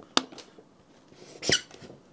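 A sharp click, then a short squeak about a second and a half in, as the heavy Sonos Five speaker is turned on the desk under a hand.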